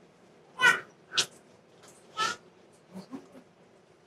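Greeting kisses on the cheek picked up by a nearby microphone: a few short smacking sounds, the loudest a little over half a second in, and the last faint near the end.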